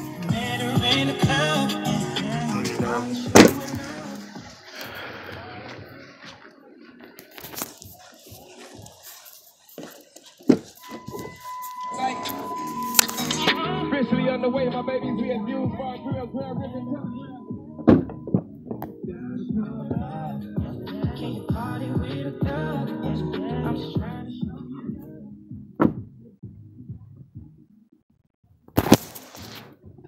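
Music with vocals playing through a 2005 Dodge Durango's front door speaker, now driven by an aftermarket radio with the factory amp bypassed: the speaker is working. The music dips and thins out at times, and a few sharp knocks cut across it.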